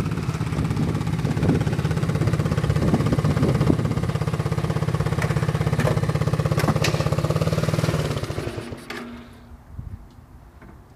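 Go-kart engine running at a steady pitch with a fast, even pulse, dying away about eight seconds in.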